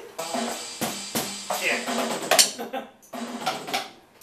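Drum kit struck with sticks: a handful of loose, irregularly spaced hits rather than a steady beat.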